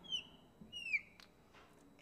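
Marker squeaking on a glass lightboard while a box is drawn: two short squeaks falling in pitch, one at the start and one about a second in, with a faint tap just after.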